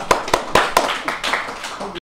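Hand clapping: a run of sharp claps about four a second, loudest in the first second, then fainter, more scattered clapping mixed with voices.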